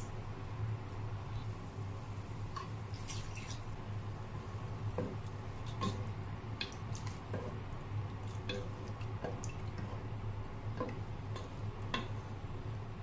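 Coconut milk heating in a pot with pork belly and being stirred with a wooden spatula: scattered small wet pops and light knocks over a steady low hum.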